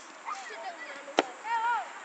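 A single sharp knock of a football being kicked about a second in, followed by a child's high shout, with other children's calls around it.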